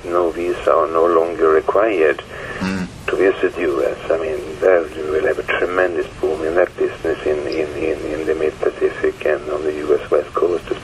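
Speech only: a person talking continuously, the words not made out by the recogniser.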